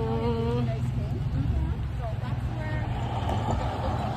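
Steady low rumble of road traffic, with a person's voice briefly at the start.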